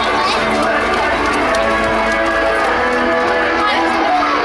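Children's voices calling out, mixed with music.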